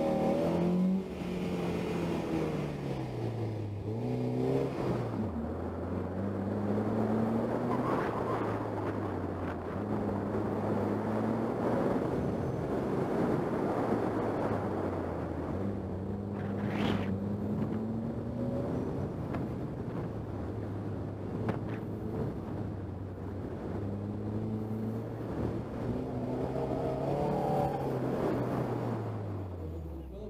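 1992 Porsche 968's 3.0-litre four-cylinder engine being driven hard through an autocross course. The revs rise and fall over and over as it accelerates, shifts and lifts, over a steady rush of noise, and they fall away just before the end.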